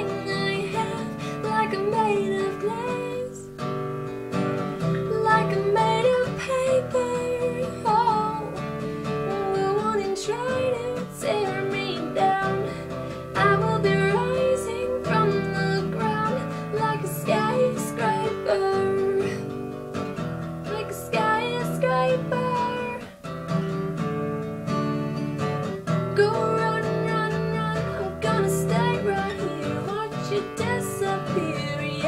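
A woman singing over her own strummed acoustic guitar.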